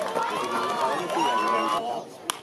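Many voices shouting and calling out over one another from a baseball crowd and bench, cut off abruptly near the end.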